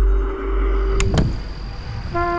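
Cinematic soundtrack sound design: a deep bass rumble fading out under a held note, with a quick whoosh about a second in, then a quieter lull.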